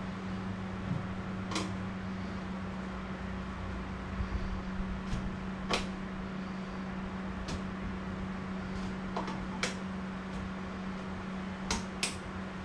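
Hard PVC pipe fittings being handled on a workbench: a few short, sharp clicks and knocks as the pieces are fitted together and set down, over a steady low hum in the room.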